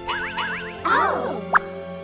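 Cartoon background music with comic sound effects: a run of quick rising swoops, then a short sharp plop about one and a half seconds in.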